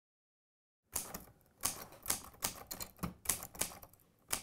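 Typewriter keys clacking in an irregular run of sharp strikes, about three a second, starting about a second in.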